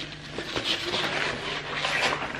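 A rolled sheet of paper rustling and crackling as it is unrolled by hand, in a run of irregular small crinkles.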